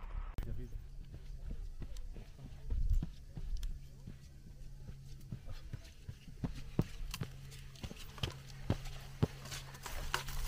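Hiking boots and trekking-pole tips on a rocky mountain trail: irregular sharp clicks and taps, over a steady low hum.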